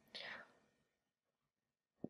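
Near silence in a pause of speech, with a faint breath or whispered trail-off from the lecturer in the first half-second.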